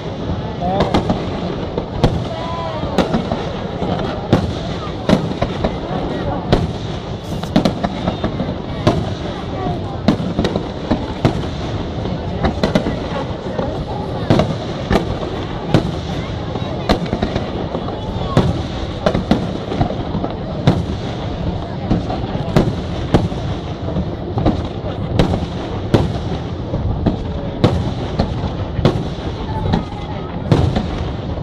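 Aerial fireworks display: a dense, unbroken run of shell bursts, roughly one or two sharp bangs a second, with crackle between them.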